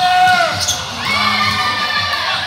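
Athletic shoes squeaking on a gym floor during a volleyball rally: short, high squeals that rise and fall in pitch, one near the start and more about a second in.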